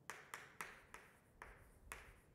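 Chalk tapping and stroking on a blackboard as words are written: a faint series of about five short, sharp taps, unevenly spaced.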